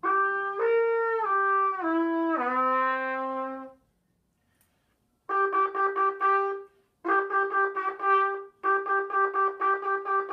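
Plastic trumpet played by a child: a slurred run of notes stepping downward through the horn's harmonics, then, after a short silence, quick tongued notes repeated on a single pitch, about four a second, in short runs.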